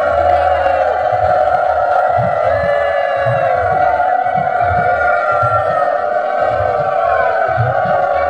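Several conch shells blown in long held notes, each bending downward as the breath runs out, overlapping into a continuous sound over crowd noise and low irregular thuds, as at a Bengali deity procession.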